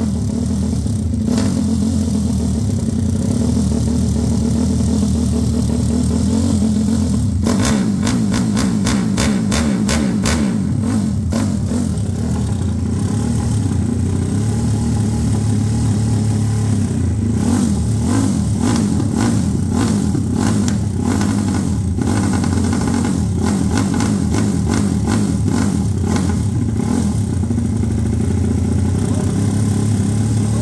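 Newly built, over-300cc, 70 mm-bore single-cylinder four-stroke engine of a modified Honda CG/Titan-based motorcycle running on its first start, throttle worked by hand. It runs loud and steady, with stretches of rapid sharp crackling a few seconds in and again past the middle.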